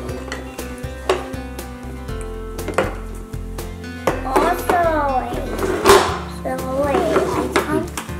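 Background music with wooden toy train track pieces clacking and knocking together on a table, and a child's wordless voice in the second half.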